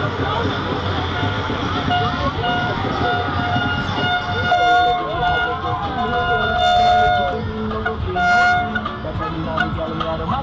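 Street-parade crowd noise of many voices, with several held horn toots. The longest toot comes about halfway through and a short one near the end.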